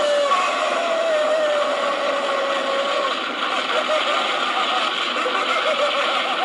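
Explosion sound effect: a loud, steady roar with a wavering, drawn-out tone over it.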